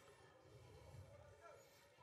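Near silence: only faint background sound.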